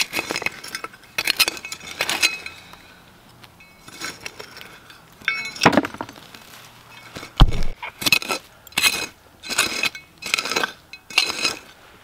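Hand digging tools, a trowel and a serrated digger, scraping and stabbing into stony soil, giving a string of short scrapes and metallic clinks. A single dull thump comes about seven seconds in, and the strokes come faster near the end.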